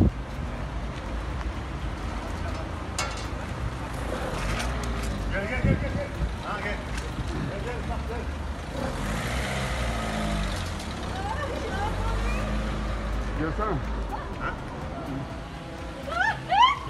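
People talking indistinctly over a low, steady rumble of street traffic, with one sharp click about six seconds in.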